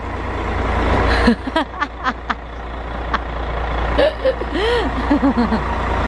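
Large coach bus engine running with a deep rumble as the bus moves off, growing gradually louder. A few light clicks about a second or two in, and faint voices near the end.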